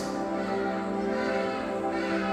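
Soft instrumental background music with sustained, steady held tones.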